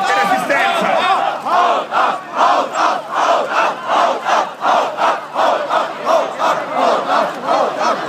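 A crowd of protesters chanting a shouted slogan in unison, in a steady rhythm of about two to three beats a second.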